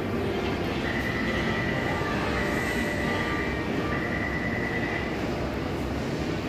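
Taipei Metro C301 train standing at a platform with its doors open, giving a steady hum. Three long, high tones of about a second each sound in the middle.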